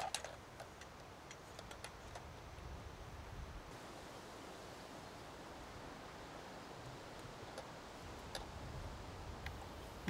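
Quiet steady hiss with a few faint, sharp clicks and light rustling, the loudest click at the start and others scattered through.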